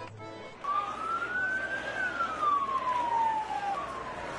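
A siren wailing in one slow rise and fall over loud street noise, after a brief snatch of accordion music at the start.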